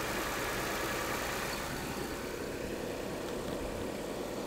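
Car V6 engine idling steadily, just after a cold start.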